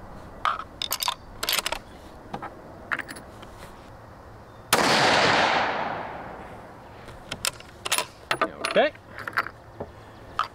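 Riflescope elevation turret clicking as it is dialed up 1.5 mils, then a single 6.5 Creedmoor rifle shot about five seconds in whose report rolls away over about two seconds. Irregular clicks follow near the end.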